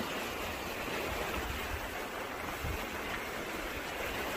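Shallow seawater washing and lapping in small waves, a steady hiss.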